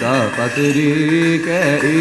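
Coptic Orthodox liturgical chant: voices singing a drawn-out melismatic line together, the pitch winding up and down on long held syllables.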